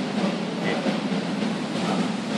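Steady background rumble and hiss of room noise, even throughout with no distinct events.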